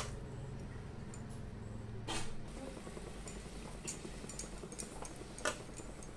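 A block of instant noodles softening in hot water in a metal kadai over a gas burner: faint, with a low steady hum underneath. A spatula knocks and scrapes against the pan a few times, about two seconds in and again near the end.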